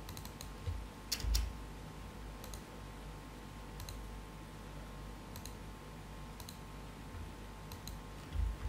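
Faint, sharp clicks in small clusters of two or three, recurring about every second and a half, over a steady low rumble and faint hum; the loudest pair comes a little after a second in.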